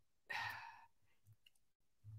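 A woman's brief audible breath out, like a short sigh, about a third of a second in; otherwise near silence.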